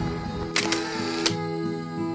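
Soft background music with a camera-shutter sound effect laid over it about half a second in: a click, a short rush of noise and a second click.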